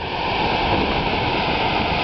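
Fumarole vent on a volcano hissing steadily as sulphurous gas escapes under high pressure.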